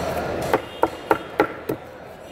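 Large knife chopping a barracuda into steaks on a wooden chopping board: five quick chops through the fish into the wood, about three a second, starting about half a second in.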